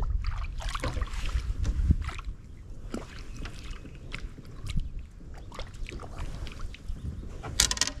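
Wind rumbling on the microphone over water lapping at a bass boat's hull, with scattered small splashes and knocks as a largemouth bass is let back into the water over the side. A short, sharp sound stands out near the end.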